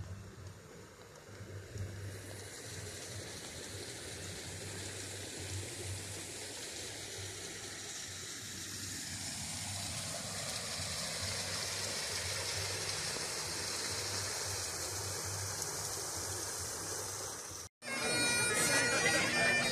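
Rushing, splashing water from a rock-lined pond with a water wheel. It is a steady hiss that grows louder over the first ten seconds or so and cuts off abruptly just before the end.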